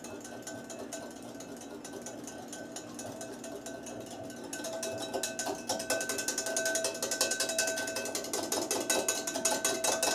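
Wire whisk beating vinaigrette in a glass bowl as oil is drizzled in to emulsify it: a fast, steady clicking of the whisk against the glass that grows louder about halfway through.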